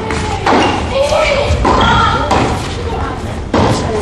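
Tennis rally: a ball struck back and forth with rackets, four sharp hits about a second apart, echoing in a large indoor hall.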